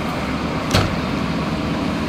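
Backhoe's diesel engine running steadily, with a single sharp knock about three-quarters of a second in.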